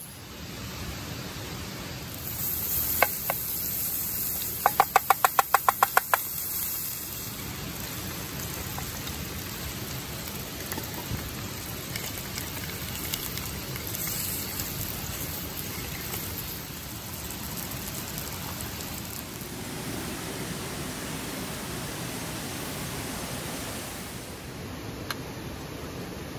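Sausages frying in oil in an aluminium camping pan on a gas canister stove: a steady sizzle. A few seconds in there is a quick even run of about a dozen sharp clicks.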